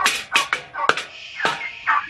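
Poultry calling nearby: a run of short, sharp calls, two or three a second.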